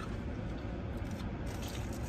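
Steady low hum of a car cabin, with faint sounds of biting into and chewing breaded corn dogs.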